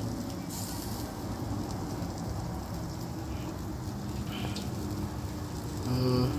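Sausage links and skewered meat sizzling on an electric grill: a steady hiss.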